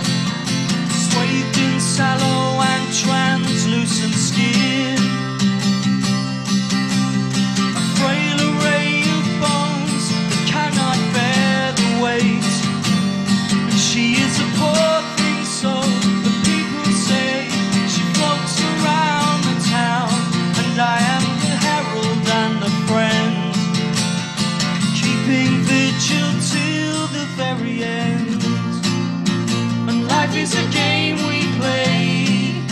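Live acoustic folk band playing a song: steadily strummed acoustic guitar with a bowed fiddle and singing over it.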